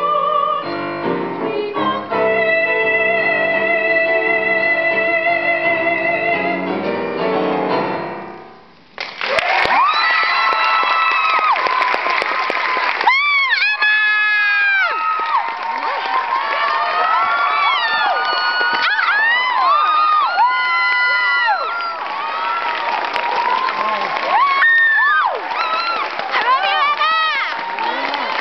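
A mezzo-soprano holds the final sung note of a musical-theatre song over piano chords, and the piano rings on and fades out. About nine seconds in, the audience breaks into applause and cheering, with many rising and falling whoops that keep going.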